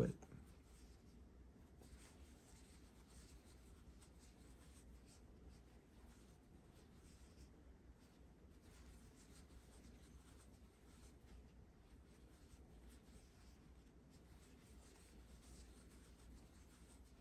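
Near silence with faint, soft scratchy rubbing of a metal crochet hook drawing yarn through stitches, over a low steady room hum.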